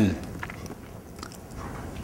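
A pause in a man's talk: the end of a spoken word right at the start, then low room tone with a few faint mouth clicks picked up close by a lapel microphone.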